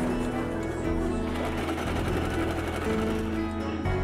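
A Singer electric sewing machine stitching as fabric is fed under the needle, heard beneath background music of held notes.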